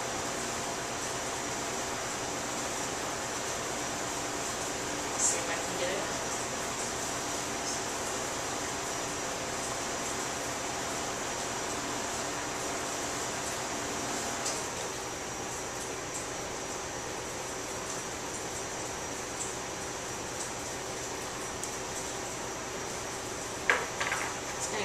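Steady room hum with a few faint, brief handling sounds, one about five seconds in and another near the middle.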